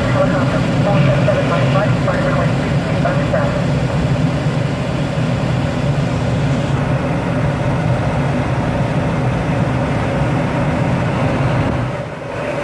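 Steady rush of airflow heard inside a glider's cockpit in flight, with no engine. The higher part of the hiss drops away about seven seconds in. Faint talk is heard in the first few seconds.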